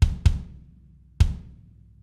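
One-shot kick drum sample played from a software sampler, triggered on the hits of a recorded kick track: three hits, two in quick succession at the start and one about a second later, each with a sharp attack and a short decay.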